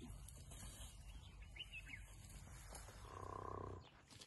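A short, sustained call from an African elephant, lasting under a second near the end, over a low steady rumble, with a few high bird chirps earlier.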